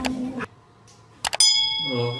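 Subscribe-button sound effect: a few quick mouse clicks about a second and a quarter in, followed by a bell-like ding that rings steadily for about half a second.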